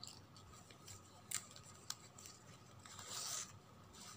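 Plastic gift ribbon rustling faintly as fingers push and slide a strand through a slot in a woven ribbon base, with two light ticks and a short rustle near the end.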